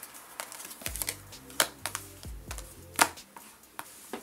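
Tarot cards being dealt and snapped down onto a table, a string of sharp clicks every half second or so, over faint background music.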